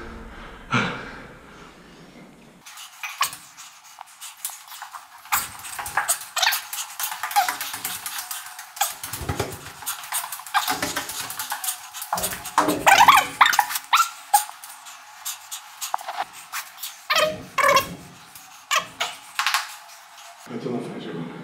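Fast-forwarded, sped-up audio of a stairwell climb with the bass cut away, making it thin and tinny: rapid clicks and knocks of footsteps and handling, with short squeaky high-pitched sounds. The thin sped-up sound cuts in about three seconds in.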